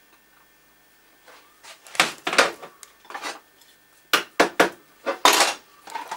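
Metal hand tools and small parts clinking and clattering on a workbench, in two bunches of sharp knocks about two and four seconds in.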